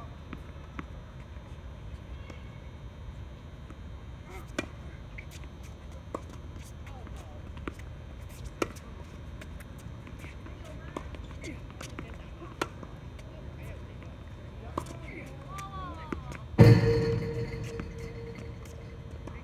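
Tennis balls struck by rackets during a doubles rally: sharp pops about every two seconds. Near the end comes one much louder impact with a short ringing tail.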